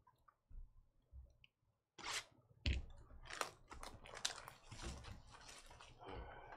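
A sealed trading-card box being torn open by hand: a few faint handling thumps, then from about two seconds in a run of crackling and tearing of wrapper and cardboard.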